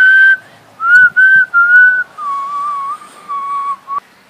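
A person whistling a short tune by mouth. One held note and two short ones, then a few lower, softer notes with a slight waver.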